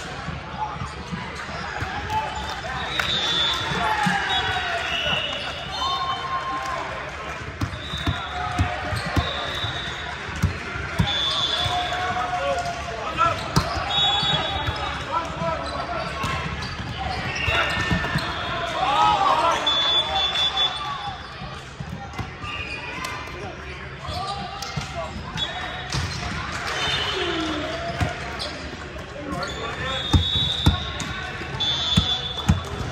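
Volleyball play in a large, echoing sports hall: voices of players and spectators calling out across the courts, with repeated thuds of volleyballs being struck and bouncing on the hardwood floor.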